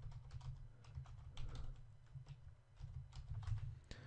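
Typing on a computer keyboard: a run of faint, irregular key clicks over a low steady hum.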